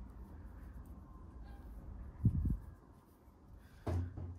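Quiet handling of a crochet hook and acrylic yarn as stitches are worked, a faint scratchy rustle over a low steady hum. A short low thump comes about two and a half seconds in, and a sharp click near the end.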